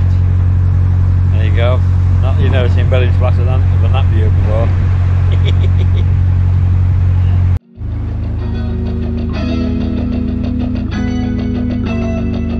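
Narrowboat's diesel engine running steadily as a low drone, with a man's voice over it. About seven and a half seconds in it cuts off abruptly and music with a steady beat takes over.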